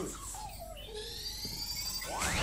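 Cartoon sound effect of the Omnitrix wrist device activating: a thin, high electronic whine of several tones that rises slowly in pitch, starting about halfway through.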